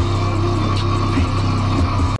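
Lamborghini's engine running steadily, heard from inside the cabin as a low drone.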